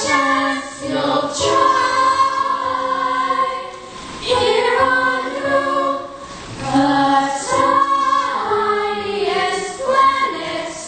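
A young stage-musical cast singing together in chorus, phrase after phrase, with brief dips between phrases.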